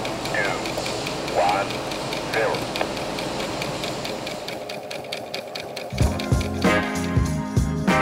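A steady, rapid mechanical rattling hum, given to the mock automatic trunk-restoring machine as its running sound, under a countdown. About six seconds in, rock-funk music with bass and drums starts.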